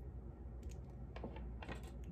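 A few faint, light clicks and taps of small objects being handled, scattered irregularly over a low steady hum.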